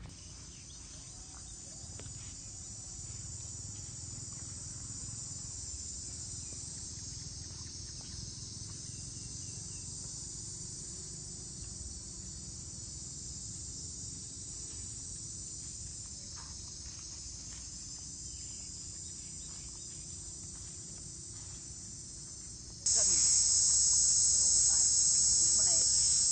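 Chorus of insects, a steady high-pitched shrill drone over a low rumble, that jumps abruptly much louder near the end.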